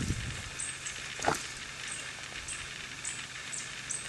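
Outdoor ambience: a steady hiss with short, high chirps repeating about every half second, a brief low thump at the start and a single click a little over a second in.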